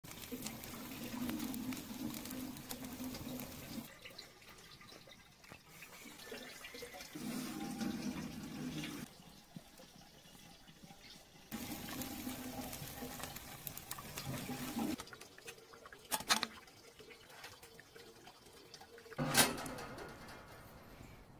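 Water running from a spout onto a small metal water wheel that drives a barbecue rotisserie, heard in several short stretches that cut in and out abruptly. Two sharp knocks come in the last few seconds.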